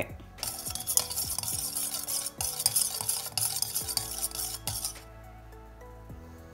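Mini stainless-steel whisk stirring melted shea butter and oils in a stainless-steel bowl, its wires ticking and scraping against the metal in a quick, continuous rattle. The stirring stops about five seconds in.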